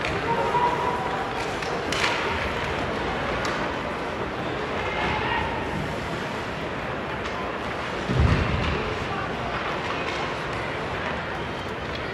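Ice hockey arena during play: a steady murmur of spectators talking in a large hall, a sharp click about two seconds in, and a heavy low thud about eight seconds in.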